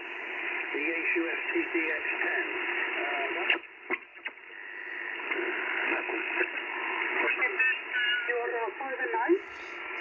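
Icom IC-705 transceiver's speaker playing 40-metre lower-sideband band audio: a distant ham operator's voice over steady band noise. The audio dips with a few clicks about three and a half seconds in while the frequency is changed. Near the end, voices slide in pitch as the radio is tuned across the band toward 7.170 MHz.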